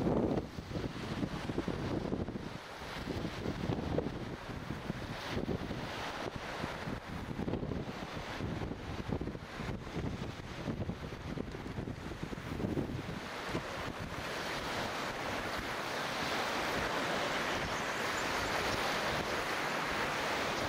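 Wind buffeting the camera microphone over small waves washing on a sandy lake shore. The gusty low rumble comes and goes for the first half, then gives way to a steadier, brighter hiss of wind and water.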